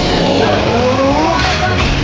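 Anime battle sound effects of a giant armoured hero's finishing energy attack charging up: a dense, steady rush of noise with gliding tones over it and a shouted voice.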